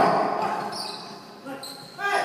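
Game sounds of pickup basketball on a gym's hardwood court: short shoe squeaks and ball sounds, echoing in the large hall. They are fainter than the voice that trails off at the start.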